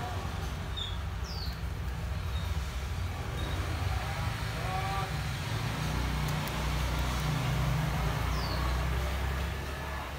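Steady low background rumble, with two brief high chirps that fall in pitch, one about a second in and one near the end.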